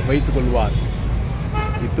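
Street traffic with a steady low rumble, and a vehicle horn that starts sounding about a second and a half in and holds one steady note.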